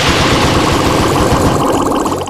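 Online slot game sound effects: a loud, rapid rattling run of effects as the bazooka feature turns symbols on the reels into fish money symbols.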